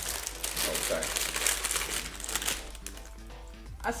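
Plastic snack packet crinkling as it is handled for the first two and a half seconds or so, then fading out.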